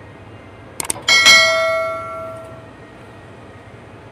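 Two quick clicks, then a single bright bell ding that rings out and fades over about a second and a half: the click-and-bell sound effect of a YouTube subscribe-button animation.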